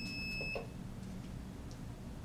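Mug heat press's timer alarm sounding a steady, high-pitched electronic tone, the signal that the timed press cycle is finished; it cuts off suddenly about half a second in, as it is switched off.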